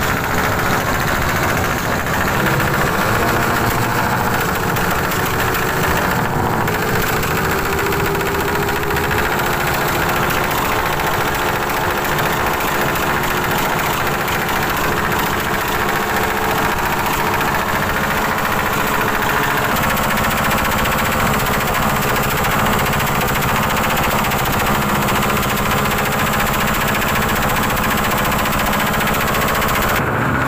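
Motorcycle engine idling steadily and loudly, close by, with a slight wavering in pitch a few seconds in.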